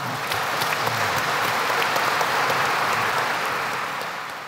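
Audience applauding, breaking out at once and keeping up steadily, a dense patter of many hands clapping.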